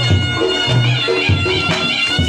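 Live Reog Ponorogo gamelan music: a shrill, nasal slompret (reed shawm) holds a wavering melody over deep sustained low notes and sharp drum strokes from the kendang.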